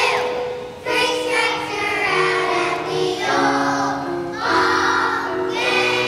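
A choir of young children singing a song in unison to piano accompaniment.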